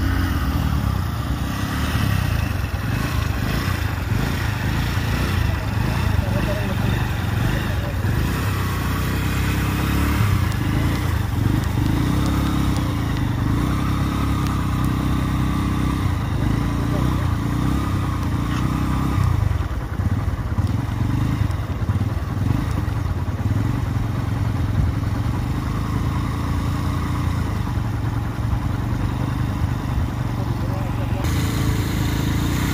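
Motor vehicle engines running steadily, a continuous low rumble, with indistinct voices in the background.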